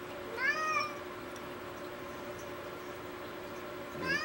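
A single short, high-pitched animal call in the background that rises then falls over about half a second, shortly after the start, over a steady faint hum.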